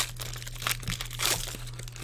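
Foil trading-card pack wrappers crinkling and crackling in the hands, in irregular short crackles with a sharp click at the very start, over a steady low hum.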